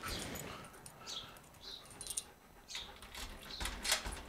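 Keys and the front door's lock being worked by hand, with sharp metallic clicks near the end, amid several short high chirps.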